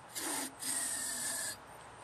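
Aerosol can of starting fluid sprayed through its straw into the spark plug hole of a small mower engine, priming it for starting: two hissing bursts, a short one and then one of about a second.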